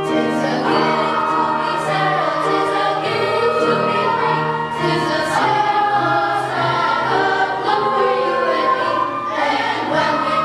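Middle school choir singing, steady in loudness with no pause.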